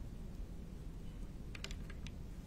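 Quiet room tone with a steady low hum, and a brief run of light clicks near the end.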